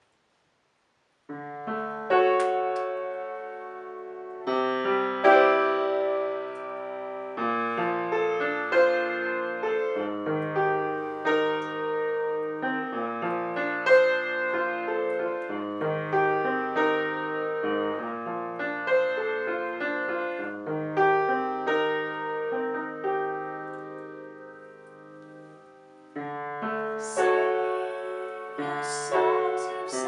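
Acoustic upright piano played solo, a slow run of held chords that starts about a second in. The playing dies down to a soft decay a few seconds before the end, then new, louder chords come in.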